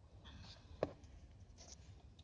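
Quiet pause in a car cabin: a faint steady low hum with soft rustles, and one short click just under a second in.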